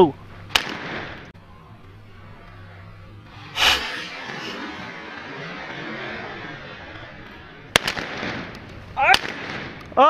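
Four shotgun shots from Benelli Super Black Eagle 2 semi-automatic shotguns, a few seconds apart: a lighter report about half a second in, then sharper ones near four seconds, near eight seconds and just after nine seconds.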